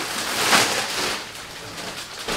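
Thin plastic shopping bag rustling and crinkling as clothes are handled into it, loudest about half a second in and easing off after.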